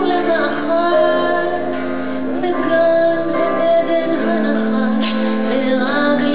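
A woman singing a Hebrew song with long held notes, accompanied by a live band.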